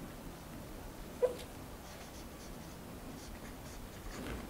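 Marker pen writing on a flip-chart pad: faint scratchy strokes, with one short, louder squeak just over a second in.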